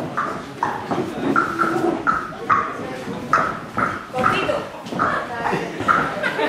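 Footsteps of a roomful of salsa dancers on a wooden floor: short sounds about twice a second, in time with the steps, over voices in the room.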